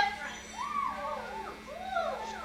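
Actors' voices making wordless, animal-like cries that glide up and down in pitch, with one longer rising-and-falling cry about half a second in.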